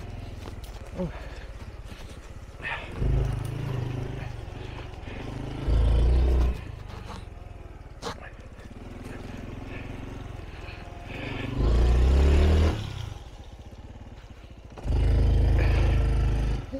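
Honda Trail 125's small single-cylinder four-stroke engine running as the bike is ridden, rising and falling in pitch with several louder bursts of throttle. A short exclamation is heard about a second in.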